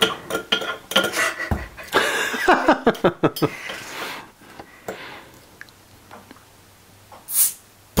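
Stainless steel pocket tool's bottle-opener hook clicking and scraping against the crown cap of a glass bottle, with a burst of laughter in the middle. Near the end a short hiss as the cap is levered off.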